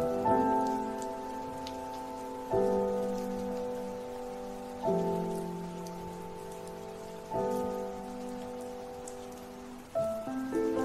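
Slow instrumental piano chords, a new chord struck about every two and a half seconds and fading until the next, over a steady bed of rain ambience with faint drop ticks.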